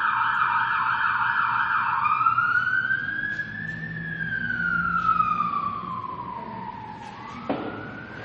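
Emergency vehicle siren switching from a fast yelp to a slow wail: the pitch rises for about two seconds, falls for about three, then starts rising again near the end. A short knock is heard near the end.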